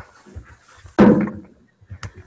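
A sudden loud bump or rustle close to the microphone about a second in, dying away within half a second, with faint small clicks around it: handling noise from someone working the meeting laptop.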